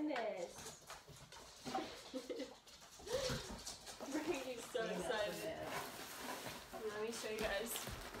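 Cardboard gift box and paper rustling and knocking as a dog noses into it and a plastic toy is lifted out, amid short low voices.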